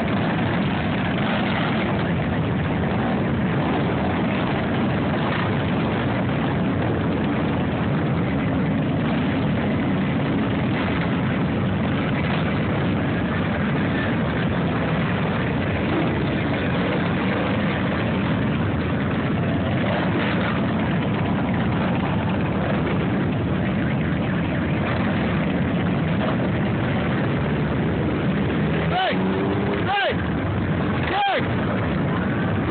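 A long procession of V-twin cruiser and touring motorcycles riding past in a steady, continuous engine rumble, one bike after another. Near the end, a brief rising and falling engine note stands out.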